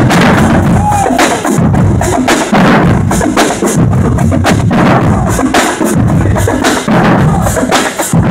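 Marching drumline playing loudly together: snare drums, bass drums and clashing hand cymbals in a dense, driving rhythm.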